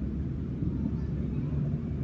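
Low, steady rumble of motor traffic.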